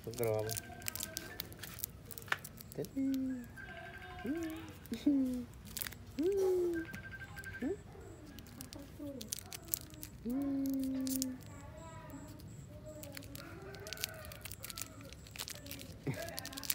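A plastic candy wrapper crinkling and crackling in short bursts throughout, mixed with short pitched vocal sounds that rise and fall.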